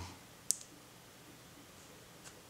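A single short, sharp plastic click about half a second in as the plastic Traxxas connector housing and the wire's soldered terminal are handled, then faint room tone.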